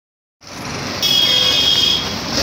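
Street traffic noise starting just under half a second in, with a steady high-pitched tone added from about a second in.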